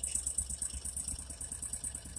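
Argo Frontier amphibious ATV's engine idling, with a fast, even rattle.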